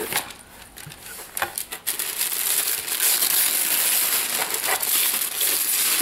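Gift wrapping being torn open and crumpled by hand. A few separate crackles come first, then from about two seconds in a continuous loud rustling and crinkling.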